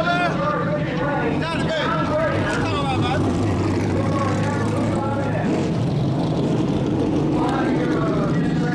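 Indistinct voices talking close by over a steady low engine hum that comes forward in the middle when the talk drops.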